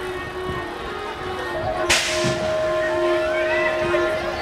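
BMX start gate dropping with a sharp slap about two seconds in, as a long steady electronic start tone sounds from just before the slap until near the end.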